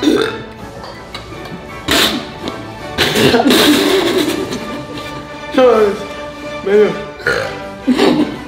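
A man gulping milk lets out several loud burps and splutters, one long rough one in the middle and shorter ones with a falling pitch after it, over background music.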